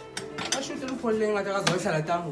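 A few light clacks of a plastic box and its lid being handled, then a drawn-out voice calling out from about half a second in, falling in pitch near the end.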